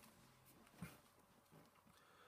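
Near silence: faint room tone, with one brief, faint sound a little under a second in.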